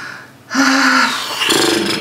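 A woman's drawn-out breathy sigh, "haa", turning rough and raspy near the end.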